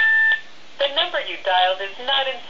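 A telephone keypad's dialing tone sounds briefly at the start, then a voice comes over the phone line, thin and without low end.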